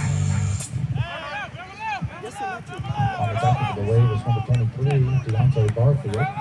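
Many voices of a football crowd and sideline shouting and calling out over one another, with a low steady drone underneath. A high thin tone cuts off about half a second in.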